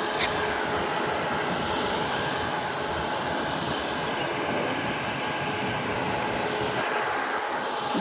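Steady mechanical drone with a faint even hum from water treatment plant machinery, the turning clarifier gear and moving water, unchanging throughout.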